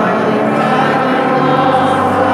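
Many voices singing a Catholic hymn together in chorus, steady and sustained.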